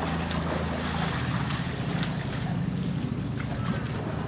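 Pool water splashing and sloshing as a young polar bear hauls itself out of the water onto the ledge, over a steady low hum.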